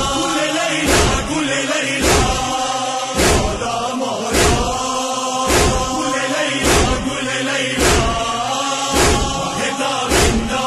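A group of men chanting a noha, a Shia lament, with a heavy rhythmic thud of chest-beating (matam) about once a second, each beat the loudest sound.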